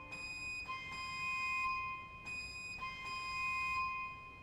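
Barrel organ pipes sounding a high held note that dips briefly about halfway, sounds again and fades near the end, as lower notes die away.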